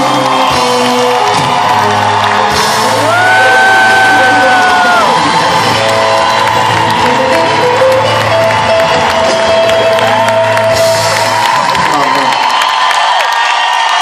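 Live Persian pop song played by an orchestra with a male singer, with a long held note a few seconds in and sustained low notes under it. Audience cheering and whooping over the music.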